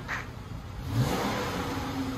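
2012 Dodge Charger's 3.6-litre V6 through its stock exhaust, idling with a short rev about a second in. The exhaust is quiet, barely heard.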